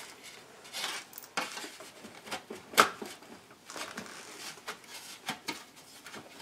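Handling noises of a fiberglass animatronic face shell being pried and wiggled against the snaps and posts that hold it to the head: scattered scrapes and small clicks, with one sharp click about three seconds in.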